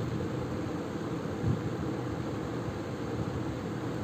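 Steady background noise with a low hum in a room, and a single soft bump about one and a half seconds in.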